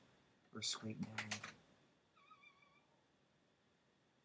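A woman's voice says a couple of words with a few sharp clicks at their end, then a faint, short, wavering high-pitched squeak sounds about two seconds in.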